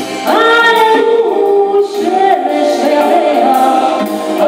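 A woman singing long, wavering held notes, entering with a rising note about a third of a second in, over live accompaniment from a bowed kamancha and a plucked tar.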